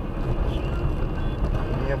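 Steady low rumble of a car's engine and tyres on a wet road, heard from inside the cabin while driving.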